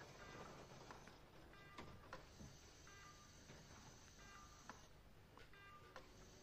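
Faint electronic beeps from a hospital patient monitor, a short tone about every second and a half, with a few faint clicks.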